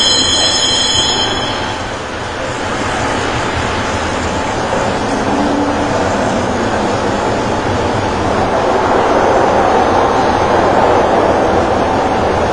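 The Tünel underground funicular car riding through its tunnel, a steady rumbling run noise, with a high squeal in the first couple of seconds.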